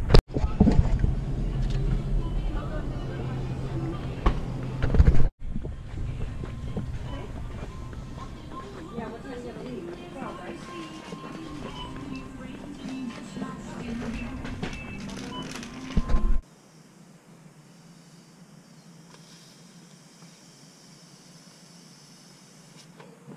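Edited sequence of clips: about five seconds of loud low rumble with knocks, then shop ambience with background music and indistinct voices, then a sudden cut to a quiet car cabin for the last few seconds.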